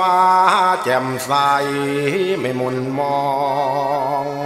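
A male voice singing Thai lae, the chanted, sermon-like style of luk thung, in long held notes that waver in pitch.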